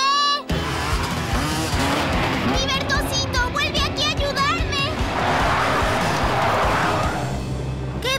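Cartoon sound effects of a small vehicle speeding and skidding over music. There are brief high-pitched yells near the middle, and a hissing rush swells late on.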